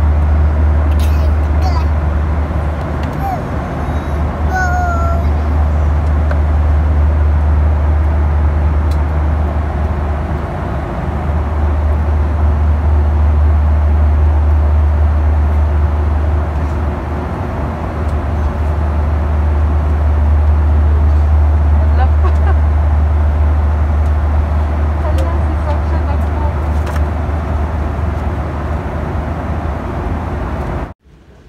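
Airliner cabin noise: a loud, steady deep rumble with an even rush of air. A child's brief voice sounds a few times early on.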